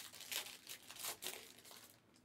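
Faint, irregular crinkling of handled packaging that stops near the end.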